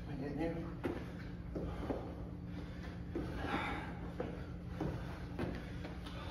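Burpees on a gym floor: several short knocks and thuds as hands, feet and the dumbbell land, with breathing from the exercising men. A steady low hum runs underneath.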